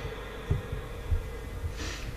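A pause in a man's speech into a microphone: a faint steady hum with a few soft low thumps, then a short breath in near the end before he speaks again.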